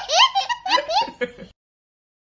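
A young child laughing hard in high-pitched peals, cut off suddenly about one and a half seconds in.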